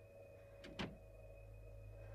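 Low steady hum of a film's background sound, with one short sharp knock a little under a second in.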